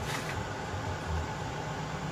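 A heater running, giving a steady, even hiss.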